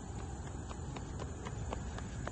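Footsteps on a paved path: a quick, uneven run of light clicks, about three or four a second, over a low rumble.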